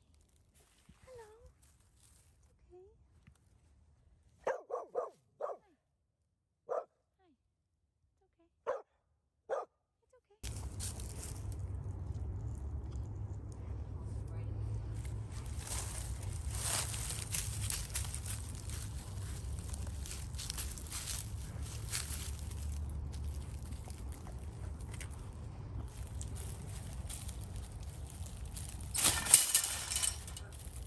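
A dog barking: a quick run of four short barks, then three single barks a second or two apart. About ten seconds in, a steady low noise with intermittent rustling takes over, with a loud burst of it just before the end.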